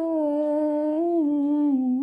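A woman humming a wordless melody line of a Hindi devotional bhajan (a Shiv bhajan) as one long unbroken phrase that lifts slightly about halfway and sinks lower near the end.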